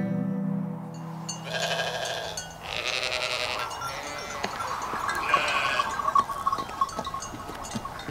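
A flock of sheep bleating, several overlapping calls one after another, with scattered clicks of hooves on hard ground in the second half. The last held notes of plucked-string music fade out in the first second or so.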